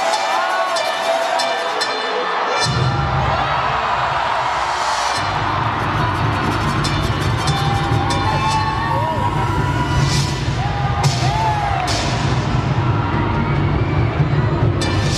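Cheerdance routine music played loud in an arena, with a crowd cheering and whooping over it. A heavy bass beat comes in about three seconds in, with sharp crashes near the end.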